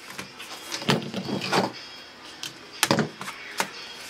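Hands working a picture frame's cardboard backing: short scrapes about a second in, then a couple of sharp clicks near the end, as the metal hanging hooks and cardboard easel are pried off the back.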